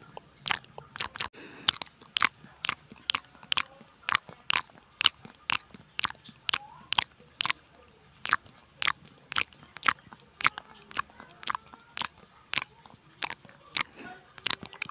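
Close-miked chewing of spicy sambal chicken and rice: a steady run of sharp, wet mouth clicks and crunches, about two to three a second.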